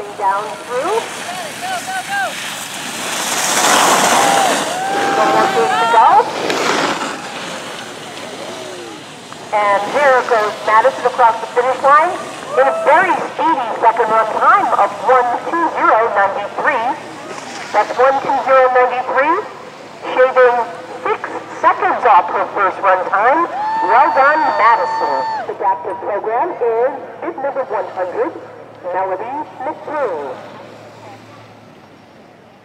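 Several raised, high-pitched voices shouting and cheering over one another, with a rush of noise a few seconds in.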